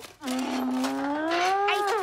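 A single long vocal moan from a cartoon character, held on one sound and rising slowly in pitch.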